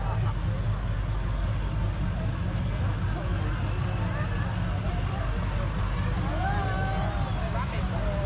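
Medium-duty parade-float truck engine running at low speed as it rolls close by, a steady low rumble, with crowd voices and chatter over it.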